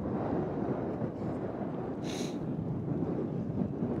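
Wind buffeting the phone's microphone: a steady low rumble, with a brief hiss about two seconds in.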